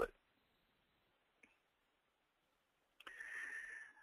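Near silence after the last word of a man's voice, broken by one faint click about a second and a half in. A short, quiet hiss with a thin whistle-like tone fills most of the last second.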